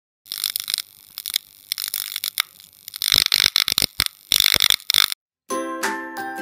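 Electric crackle-and-buzz sound effect of a flickering neon sign, coming in irregular bursts and cutting off suddenly about five seconds in. After a short silence, bright bell-like mallet-percussion music begins near the end.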